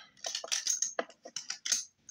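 A quick, irregular run of small clicks and rustles from hands handling papers while trying to pull a drawing out.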